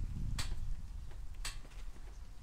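Two sharp clicks about a second apart from a camper trailer's steel roof rack as it is pushed up by hand on its gas struts, over a low rumble.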